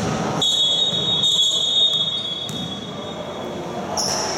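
Electronic scoreboard buzzer in a basketball gym, sounding one steady high-pitched tone for about two seconds, starting about half a second in.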